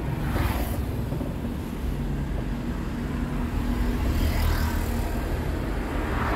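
Steady low rumble of a car running close by, with road traffic noise.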